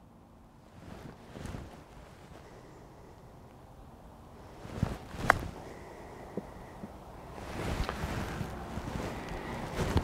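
A single crisp click, a few seconds in, as a 58-degree wedge strikes a golf ball in a short chip shot, over steady wind noise on the microphone.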